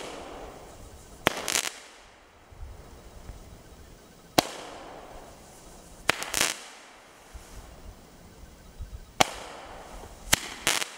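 Mega Ton Flying Fish 7-shot Roman candle firing. Each shot launches with a sharp pop, about every five seconds, and about a second and a half later a short crackling burst follows.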